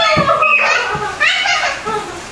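A child's high-pitched squeals of play: one long cry sliding down in pitch at the start and another shorter one sliding up about a second and a half in, with a couple of dull thumps in between.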